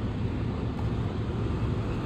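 Semi-truck diesel engine idling, a steady low rumble.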